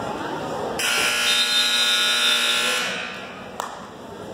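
Gym scoreboard buzzer sounding one steady tone for about two seconds, starting about a second in, as time is stopped in a wrestling bout. A single sharp knock follows near the end.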